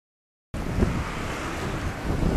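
Silence, then about half a second in, wind starts buffeting the camera microphone with a loud rumble.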